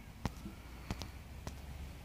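Faint, sharp clicks of a camera taking pictures: one about a quarter second in, two close together around one second, and another at about one and a half seconds, over a low steady hum.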